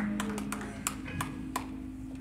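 A live church band's music dying away: a held low chord rings and then fades, with about five scattered sharp taps over it.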